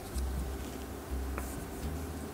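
A tarot card slid off the top of a deck on a cloth-covered table and lifted: soft rubbing of card stock with a couple of dull handling bumps and a brief scrape about halfway through.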